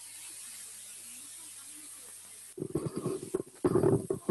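Steady microphone hiss, then from about two and a half seconds in a loud, irregular run of rustling, bumping and rumbling from a microphone being handled.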